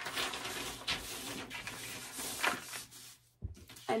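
Sheet of brown kraft paper rustling and crinkling as it is slid across a cutting mat and under a paper pattern piece, with a soft low thump near the end as it is pressed flat.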